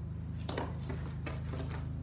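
A sharp knock about half a second in, then a few fainter taps, from a softball being fielded off a short hop on a concrete patio, over a steady low hum.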